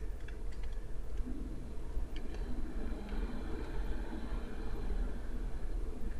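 Steady low room hum from the recording setup, with a few faint computer clicks, a pair of them about two seconds in.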